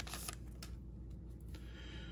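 Faint handling sounds of baseball cards being pulled out of an opened foil card pack: a few light clicks and a soft rustle.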